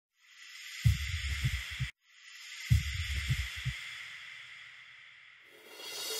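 Steady hiss with a faint high tone in it, broken by two clusters of low thumps about a second and a half long, the first about a second in. Music fades in near the end.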